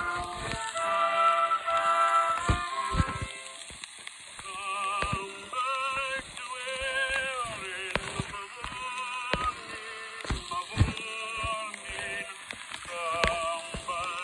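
1907 acoustic phonograph recording playing, with the instrumental accompaniment first and a melody with heavy vibrato coming in about four and a half seconds in. Steady crackle, clicks and hiss from the old record's surface noise run under it.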